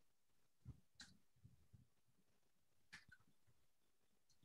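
Near silence: room tone with a few faint, short soft noises.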